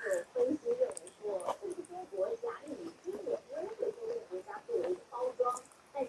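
A young child's voice making a run of short, wordless, wavering grunting sounds, several a second.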